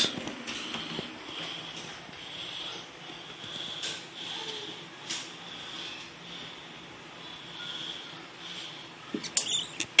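A live young feeder rat squeaking faintly and repeatedly inside a ball python's enclosure. A brief cluster of knocks comes near the end.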